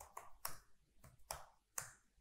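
Keystrokes on a computer keyboard: a handful of separate, irregularly spaced clicks as code is typed.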